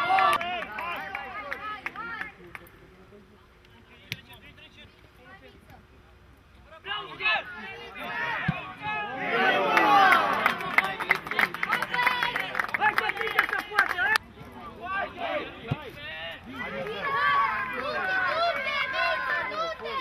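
Several voices shouting and calling out across an outdoor football pitch, many of them overlapping. A loud shout comes right at the start, a quiet lull follows, then a burst of many voices shouting at once in the middle, and more calling near the end.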